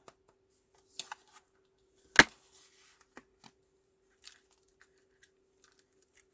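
Clear plastic stamp-set case and photopolymer stamps being handled: one sharp loud click a little over two seconds in, with light taps and small clicks before and after as a clear stamp is worked off its sheet. A faint steady hum runs underneath.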